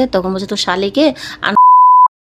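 A woman talking, then about one and a half seconds in a loud, steady, pure beep tone lasting about half a second, with her voice cut out beneath it: a censor bleep laid over a word of her speech.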